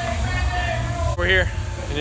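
Outdoor crowd ambience: faint voices over a steady low rumble, then a man's voice starts speaking close to the microphone a little past halfway through.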